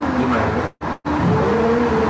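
Live-stream audio breaking up, cutting out to silence several times in the first second, then running steadily with voices over background music.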